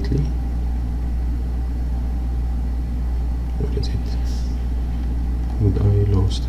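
A steady low hum runs under the recording, with faint brief sounds about four seconds in and a short burst of the narrator's voice at the start and again near the end.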